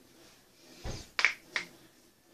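A dull thump, then two sharp snaps about a third of a second apart, made by hands striking together while signing.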